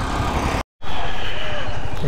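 Motorcycle riding noise: wind rushing over the action camera's microphone with the engine running underneath, broken by a brief silent gap less than a second in.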